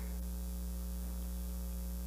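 Steady low electrical mains hum, held level with no other sound.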